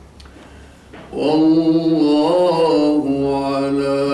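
A man reciting the Quran in melodic chanted style. After a pause of about a second, he begins a long, drawn-out phrase with held notes that waver in pitch.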